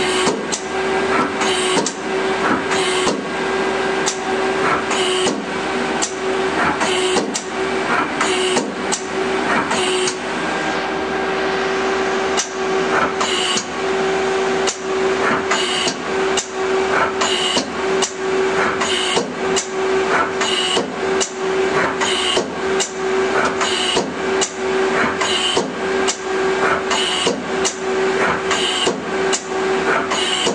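Tool turret of a 2010 Mazak Quick Turn Nexus 200-II CNC lathe indexing from station to station, with a clunk about once a second as it locks at each position, over a steady hum from the machine.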